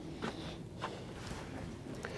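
Faint footsteps on a wooden plank footbridge: a few separate steps, the two clearest about 0.6 s apart, over a low steady outdoor background.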